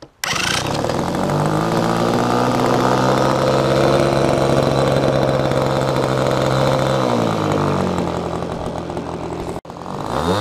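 Small piston engine of an RC model airplane running steadily with a high, even buzz. It cuts in abruptly at the start and its pitch sags slightly late on, then swings up and down near the end.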